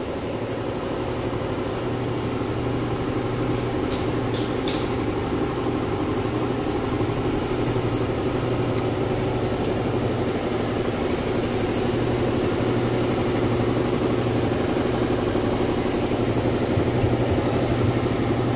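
An engine idling steadily, with a couple of faint clicks about four to five seconds in.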